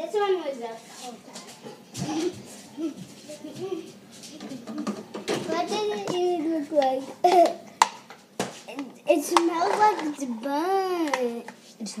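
Children's voices talking and exclaiming in a small room, with a long wavering, falling vocal sound near the end. A few sharp knocks fall in between.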